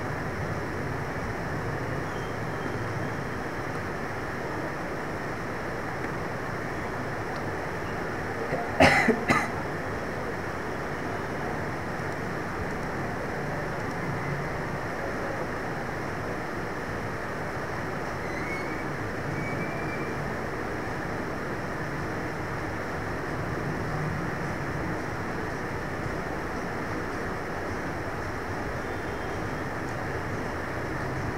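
Steady background noise, with a short, louder burst of two or three quick sounds about nine seconds in.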